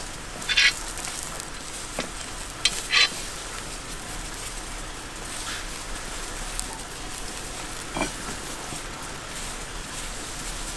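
Skewers of wild boar meat sizzling steadily over hot charcoal, with two short, louder pops, one about half a second in and one about three seconds in.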